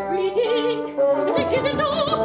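Operatic female voice singing with wide vibrato over sustained instrumental accompaniment; a new sung phrase begins about a second and a half in.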